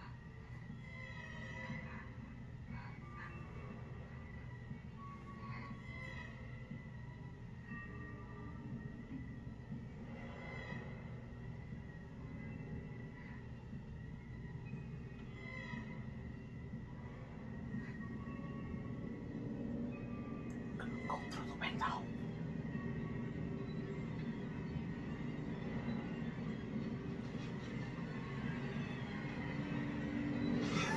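Horror-film suspense score: a low, rumbling drone with scattered faint high notes. It grows louder over the second half, with a few sharp hits about two-thirds of the way through.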